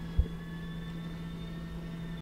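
Steady low hum and rumble of background noise, with one brief low thump just after the start.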